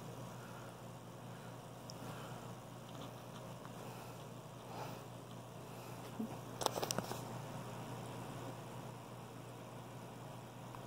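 Faint sounds of a puppy chewing and mouthing a plush toy, with a short cluster of sharp clicks about seven seconds in.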